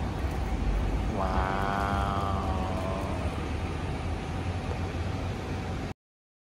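Hot pot broth at the boil, a steady low rumble with hissing bubbling as the lid comes off. From about one to three seconds in, a person's voice holds one drawn-out tone over it. All sound cuts off suddenly near the end.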